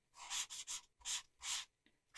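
Felt-tip marker strokes on tracing paper: about five short, quick swipes in the first second and a half as an area of the sketch is filled in with grey.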